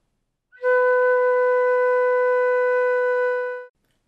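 Concert flute playing one long, steady B, the first note taught to beginners. It starts about half a second in and stops just before the end.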